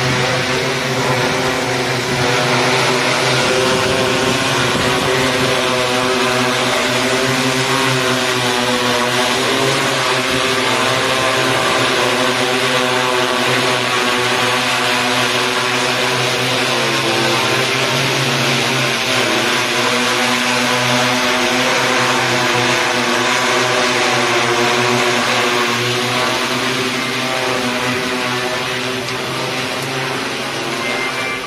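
Six-rotor agricultural spraying drone flying overhead: a loud, steady propeller hum made of several pitches that waver slightly as the rotors adjust, getting a little quieter near the end.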